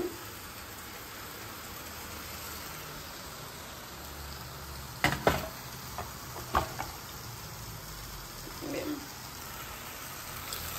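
Fish frying in a pan on the stove: a steady sizzle. A few sharp clicks come about halfway through.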